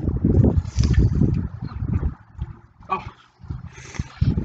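Wind buffeting a handheld microphone: an irregular low rumble, heaviest in the first two seconds, then fainter and patchier.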